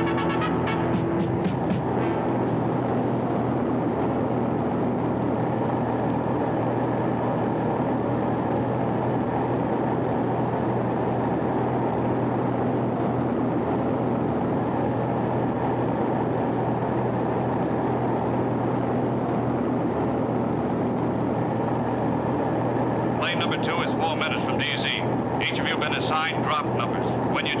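Steady drone of a transport plane's engines heard from inside the cabin: an even rumble with a low hum underneath. Music fades out in the first two seconds.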